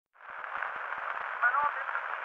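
Surface hiss and crackle of a 1905 Pathé acoustic recording, starting just after the beginning, narrow and thin in tone. About one and a half seconds in, the first brief pitched sounds of the performance come through the noise.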